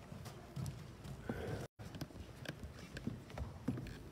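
Scattered knocks and shuffling footsteps on a wooden church floor as children settle into place, with a brief dropout in the audio partway through.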